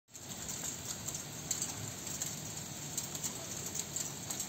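Heavy wet snowfall making a steady patter, with many small ticks of flakes and pellets striking nearby surfaces.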